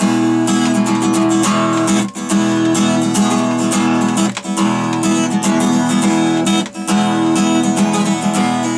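Cutaway acoustic guitar strummed in a steady rhythm, its chords ringing, with a short break every couple of seconds.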